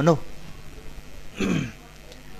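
A man clearing his throat once, a short rasp about one and a half seconds in, during a pause in his talk.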